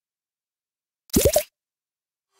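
Silence, then about a second in a single short, rising 'bloop' cartoon sound effect that lasts under half a second.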